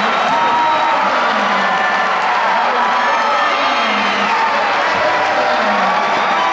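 Large arena crowd cheering and shouting, many voices overlapping, with applause mixed in, holding a steady level throughout.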